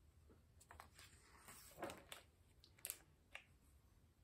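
A hardcover picture book's page being turned by hand: a few faint, brief paper rustles and taps, the loudest about two seconds in.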